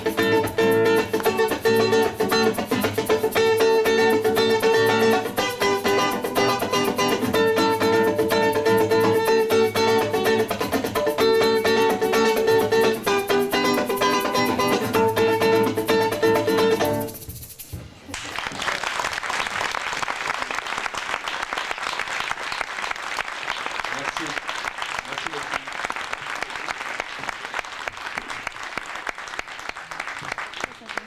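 Acoustic guitar playing an instrumental passage that ends about 17 seconds in, followed by an audience applauding.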